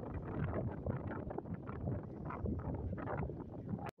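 Wind buffeting the microphone in a rough, fluttering rush, heaviest in the low end, which cuts off abruptly near the end.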